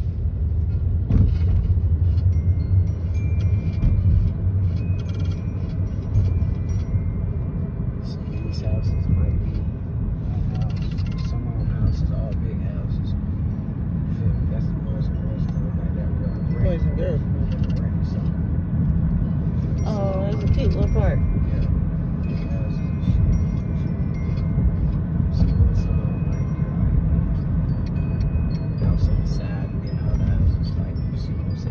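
Steady low rumble of a car driving, heard from inside the cabin, with music playing over it and brief voice-like sounds around the middle.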